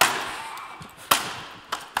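Acoustic guitar being smashed on a wooden stage floor: a loud crash at the start that rings on as the strings and body sound, a second smash about a second later, and lighter knocks of breaking pieces near the end.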